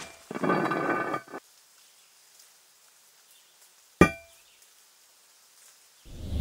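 Sound effects of a rusty metal padlock being handled: a rough grating scrape of metal lasting about a second, then a single sharp metallic clank with a short ring about four seconds in.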